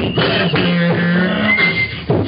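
A man beatboxing into a handheld microphone, with quick percussive mouth clicks and snares. A held low bass hum runs through the middle, and a short high whistle-like tone comes near the end.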